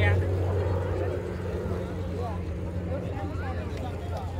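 A steady low hum runs throughout, louder at the start and easing off about half a second in, with faint voices of people talking under it.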